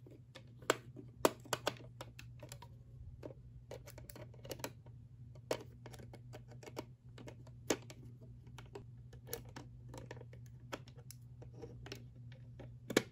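A precision screwdriver turning a small screw out of a hollow plastic toy's battery cover: irregular sharp clicks and ticks of the bit in the screw head and of fingers handling the plastic case. A steady low hum runs underneath.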